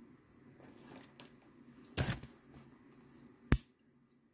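Handling of an enamelled metal bangle on a wooden tabletop: faint rubbing and fingering, a soft knock about two seconds in, and one sharp click near the end.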